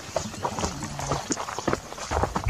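Footsteps walking uphill on dry, loose earth and dry grass: several irregular steps a second, with small scuffs and knocks underfoot.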